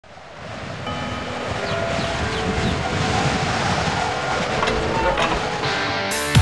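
Intro sound design: a rushing noise that swells in over the first second, with held musical tones that shift in steps on top of it.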